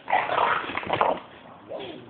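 Puppy dogs in rough play, with a loud, rough dog vocalization for about the first second that then dies down.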